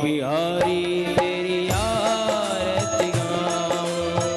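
Devotional Hindu bhajan: a voice sings a gliding, ornamented melody over sustained instrumental notes, with regular drum strokes keeping the beat.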